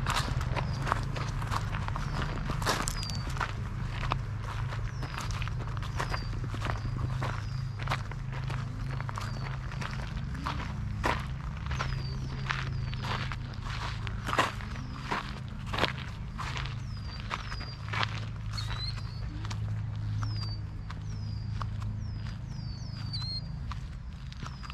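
Footsteps crunching on a gravel path at a walking pace, about two steps a second. Birds chirp repeatedly in short, high, falling notes, over a low steady rumble.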